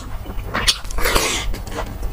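Close-miked biting and chewing of sauce-glazed fried chicken: quick crunches and wet mouth sounds, with a brief hissing rush of breath about a second in.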